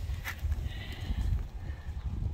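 Wind rumble and handling noise on a handheld phone microphone, with a single click about a quarter of a second in.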